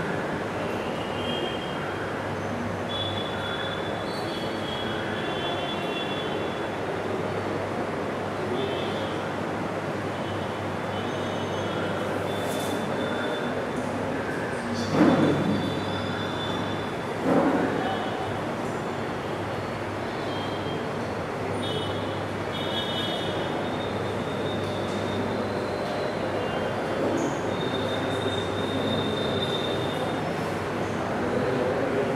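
Steady room noise, a low hum under an even hiss, with two short louder noises about two seconds apart about halfway through.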